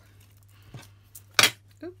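Clear acrylic stamp block being handled: a few faint clicks, then one short, sharp clack about one and a half seconds in, over a low steady hum.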